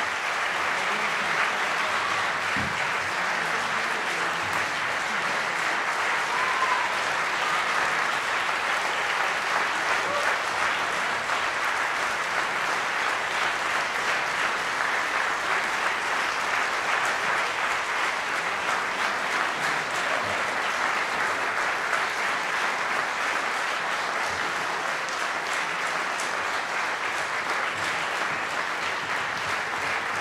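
Audience in a concert hall applauding, a steady dense clapping throughout that eases off slightly near the end.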